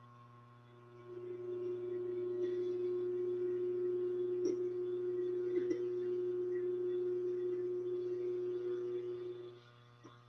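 A steady tone held at one pitch, starting about a second in and lasting about eight and a half seconds, over a faint constant hum.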